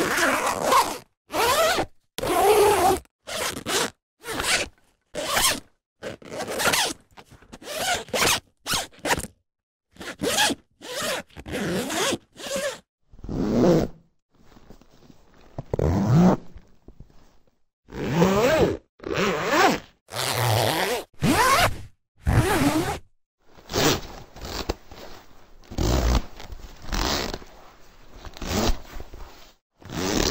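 A run of zippers being zipped and unzipped one after another, about one stroke a second with short silences between. Some strokes are quick and short, others slower and drawn out over about a second.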